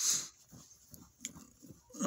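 A short, noisy breath or snort from a man at the start, then quiet with a faint click just over a second in.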